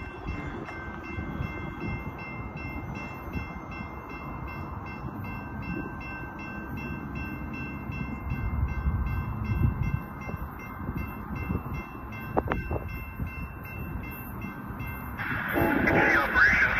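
Distant BNSF loaded coal train, led by GE ES44AC diesel-electric locomotives, approaching with a low rumble that grows louder near the end. Over it, a high ringing tone repeats about three times a second and stops about a second before the end.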